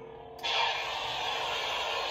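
Neopixel lightsaber's blade-lockup sound effect from its hilt speaker: a steady hissing crackle that starts suddenly about half a second in, over the saber's faint hum. It is triggered by the blade pressed against the hand.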